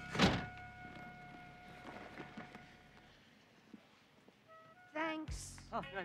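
A single loud thunk about a quarter second in, over background music whose held notes fade out over the next few seconds. A voice starts near the end.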